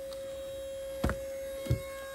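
A steady electric hum on one pitch, with two faint knocks, the first about a second in and the second shortly before the end.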